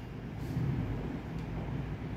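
Low, steady background rumble of room noise, with no distinct event in it.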